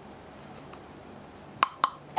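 Two sharp knocks about a quarter second apart near the end, from the hard casing of the flight recorder's module clacking against its surround as it is handled and lifted out. Before them only faint room noise.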